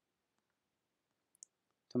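A single faint computer-mouse click a little over halfway through, otherwise near silence.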